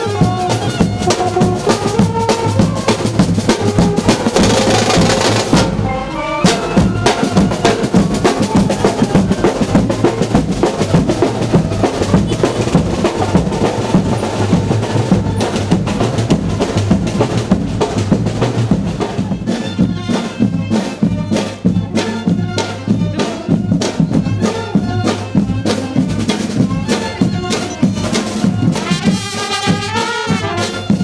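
Marching brass band playing, with saxophones, clarinet and trumpets over a steady beat of drums. A cymbal crash or drum roll comes about four to six seconds in; through the middle the drums carry the music with the horns less prominent, and the horns come back strongly near the end.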